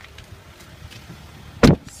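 A pickup truck door, on a 2015 Ram 1500 Crew Cab, is shut once with a single heavy thud near the end.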